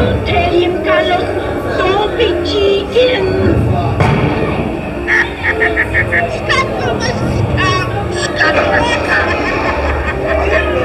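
Animatronic dark-ride soundtrack: a jumble of shouting pirate voices over music, with squawking fowl and a quick run of five short high notes about five seconds in.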